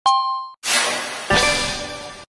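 Online slot game sound effects: a single metallic ding that rings for about half a second, then a longer, bright chiming win sound with a second hit partway through, as a win is paid.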